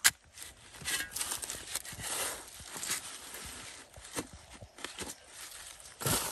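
Shovel digging and scraping in soil and dry leaf litter: a sharp knock at the start, then scattered crunches and a couple of longer scrapes.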